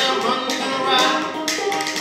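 Banjo being picked with hand-slapped body percussion keeping time, the sharp slaps standing out over the plucked notes.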